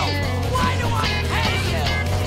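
A rock song with guitar over a steady bass line, playing at full level.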